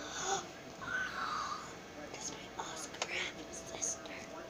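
A girl whispering softly, with faint rustling of plush toys being moved.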